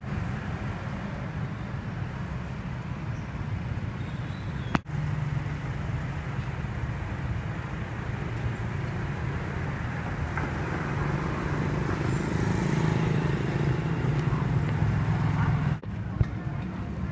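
Steady street noise with the low rumble of passing road traffic, briefly cut off about five seconds in.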